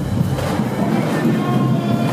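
Marching band playing loudly, heavy in the low brass, with sousaphones booming under the dance routine, and a few higher held notes in the second half.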